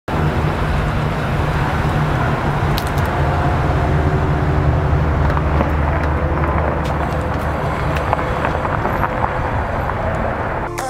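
Chevrolet Silverado 2500HD pickup's engine running at low speed as the truck slowly drives past towing an Airstream travel trailer: a steady low hum, with a few light clicks in the middle.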